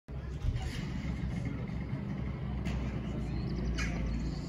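Steady low outdoor rumble, with two brief high sounds, one near three seconds in and one near the end. The swinging pendulum itself is silent.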